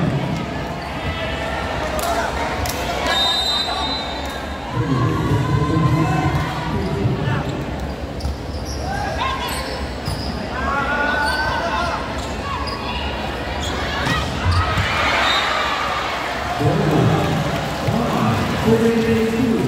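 Volleyball rally on an indoor court: the ball struck with a few sharp hits, players calling out, and many spectators talking in the large hall.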